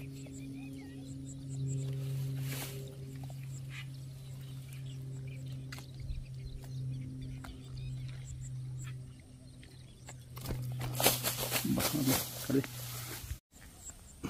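A steady low hum with a few overtones, like a motor running, for the first ten seconds or so, with a few light clicks over it. Louder rustling and handling noise follows, and the sound cuts off suddenly just before the end.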